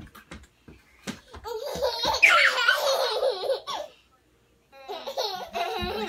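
Toddlers laughing and squealing in high-pitched bouts. The first bout starts about a second and a half in, there is a short pause, and a second bout follows near the end.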